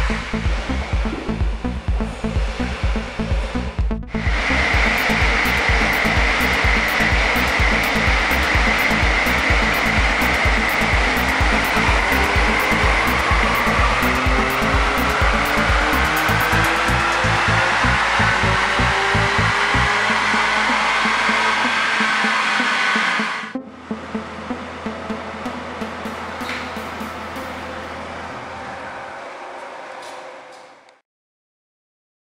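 An electronic music beat, then from about four seconds in the Mercedes CLA 45 AMG's turbocharged 2.0-litre four-cylinder at full throttle on a chassis dyno. A loud rushing run, the engine note climbing steadily in pitch for almost twenty seconds, then cut off suddenly as the throttle closes, leaving a lower steady hum.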